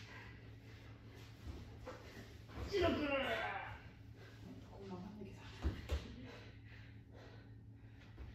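Judo throw practice on tatami: a loud vocal cry from one of the judoka, lasting about a second, about three seconds in as the throw goes in. Then two sharp thuds of bodies hitting the mat, a third of a second apart, near six seconds, with quieter rustling of judogi and feet on the mat around them.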